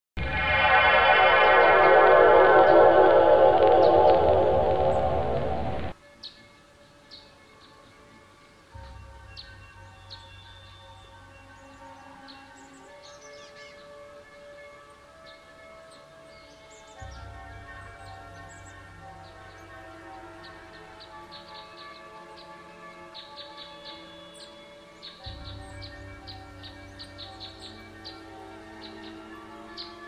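A loud, shimmering sci-fi sound effect lasting about six seconds, then cutting off suddenly. Soft background music follows, with held synth chords and low bass notes that come in three times, and short high chirps over it.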